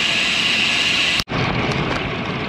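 Steady wind and road noise on a bicycle-mounted action camera's microphone while riding, broken by a brief dropout at an edit cut just past a second in, after which the noise sounds slightly duller.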